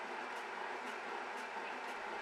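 Omega Supercharger high-pressure air compressor running steadily while it pressurizes the line to an SCBA tank, heard as an even, hiss-like machine noise.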